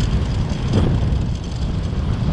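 Steady rumble and rushing noise of a vehicle travelling along a road, with wind buffeting the microphone.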